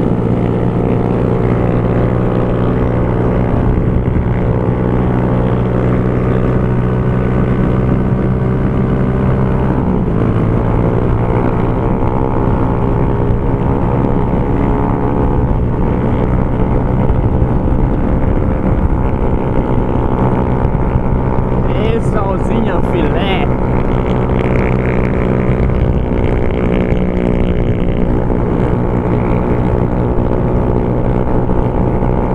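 Honda CG Fan 150's single-cylinder four-stroke engine, fitted with a Torbal Racing aftermarket exhaust, running steadily under way. Its note changes about ten seconds in. Wind rushes over the microphone throughout.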